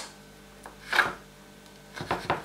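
Kitchen knife slicing through raw chicken breast on a wooden cutting board: one short cut about a second in, with a faint tick just before it.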